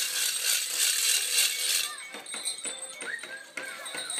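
Bells and rattles on the costumes of a Romanian New Year goat-dance troupe, jingling densely for about the first two seconds as the troupe walks, then thinning to scattered clinks and clacks.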